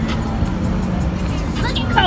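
Bass-heavy music mixed with the low rumble of car engines at slow roll, with a voice coming in near the end.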